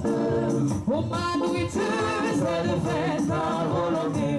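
Voices singing a French-language gospel hymn over steady music, the melody moving up and down without a break.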